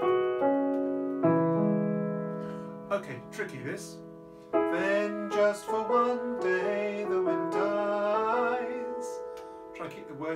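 Nord Stage 3 stage keyboard playing sustained piano chords and a melody. For about the middle third, a man's voice sings a tune over the chords.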